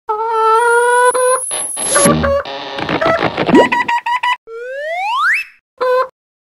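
Cartoon sound effects over music: short pitched tones at the start, a busy clattering stretch in the middle, then a long rising glide about four and a half seconds in, ending with a short tone.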